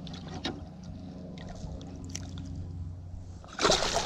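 A hooked bass splashing at the water's surface, loud and sudden, starting about three and a half seconds in, after a few faint clicks.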